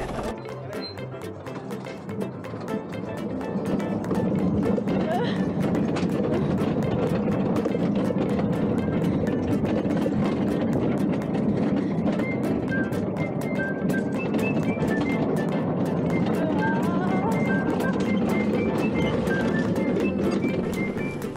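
Golesat ride cart rolling along, a steady rumble full of small rattling clicks that gets louder about four seconds in as it picks up speed.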